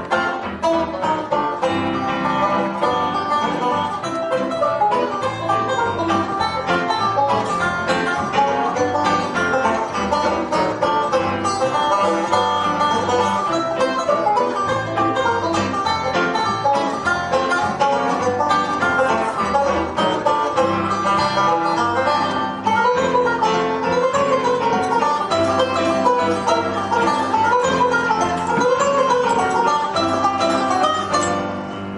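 Live banjo and piano duet playing a big-band swing tune, the banjo picked over the piano, with a busy, continuous run of notes.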